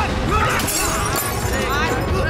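Fight-scene soundtrack: background music with wavering vocal lines and shouting, and a crash-like hit sound effect a little over half a second in.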